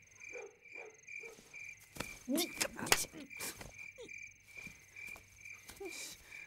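Crickets chirping in a steady, even rhythm of about two to three chirps a second, with a few short, soft human vocal sounds and light knocks around the middle.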